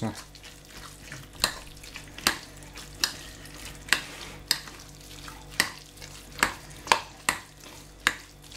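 A metal fork stirring grated beetroot salad in a glass bowl, clicking sharply against the glass about once a second, with a soft wet stirring sound between the clicks.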